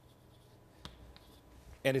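Chalk writing on a chalkboard: faint scratching with a couple of light taps of the chalk.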